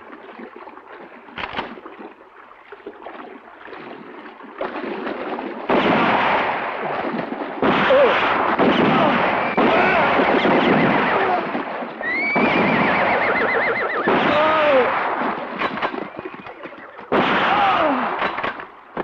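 Horses splashing through a river, with repeated whinnies and neighs over heavy water splashing that grows louder in sudden steps after a few seconds. A single sharp crack comes about a second and a half in.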